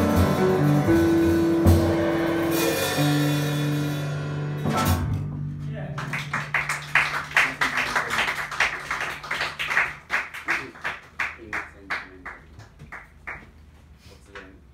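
A jazz quartet of piano, archtop electric guitar, upright bass and drums plays the final chord of a tune, with a low bass note held for several seconds as the rest rings away. Then a small audience claps, the claps thinning out and stopping near the end.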